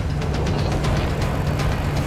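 Music with the sound of a pickup truck's engine running and its off-road tires spinning through loose dirt.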